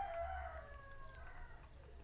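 A faint, long drawn-out animal call with several pitched lines, sliding down in pitch and fading out about a second and a half in.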